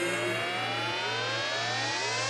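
Electronic synth riser in a deep house track, a stack of tones climbing steadily in pitch over a held low bass note, as in a breakdown building toward the drop.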